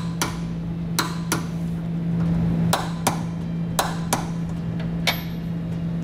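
Click-type torque wrench clicking as it reaches the set torque on the trailer hitch's half-inch mounting nuts: eight sharp metallic clicks, mostly in pairs about a third of a second apart. A steady low hum runs underneath.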